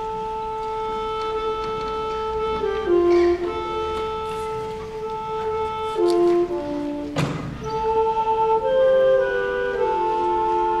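School concert band playing a slow passage, woodwinds and brass holding sustained notes that step to new chords every second or two.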